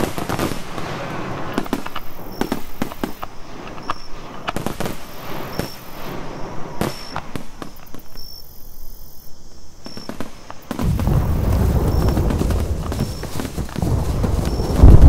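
Battle sound effects of scattered musket shots cracking at irregular intervals. Near the end a loud, deep continuous rumble comes in.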